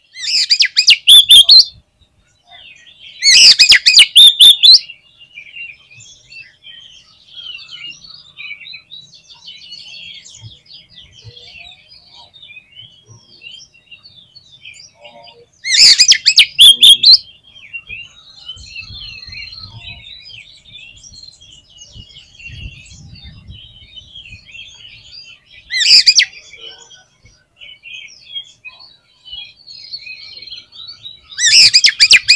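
Oriental magpie-robin singing vigorously: a continuous, varied run of quieter chirps and warbled whistles, broken four times by loud, harsh bursts of song, near the start, about three seconds in, about sixteen seconds in and about twenty-six seconds in.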